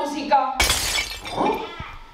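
A sudden shattering crash, like breaking glass, about half a second in, fading over the next second, with voices before and after it.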